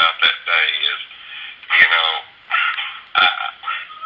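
Speech heard over a telephone line, thin-sounding with the high end cut off, in short phrases with brief pauses.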